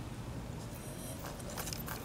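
Quiet handling noise with a few faint light clicks as a model four-stroke glow engine is primed by turning its propeller over by hand, over a steady low background hum.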